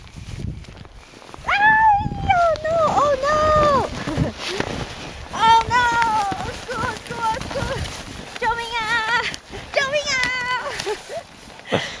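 A young child's high-pitched voice: long, wavering squeals and babble in several bursts, with a short laugh and a 'yeah' near the end.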